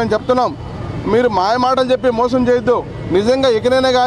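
A man speaking in a raised voice to press microphones, in short phrases with brief pauses, over a steady low background rumble.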